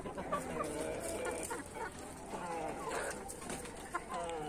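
Chickens clucking quietly, several short low calls overlapping from more than one bird.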